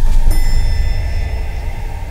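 A single high bell-like chime struck about a quarter second in and ringing on, fading slowly, over a low steady rumbling drone.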